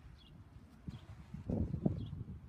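Outdoor ambience with a low, uneven rumble. Faint short high bird chirps come about once a second. A couple of dull knocks land near the end, likely the golf club head bumping the turf mat as the golfer lowers it.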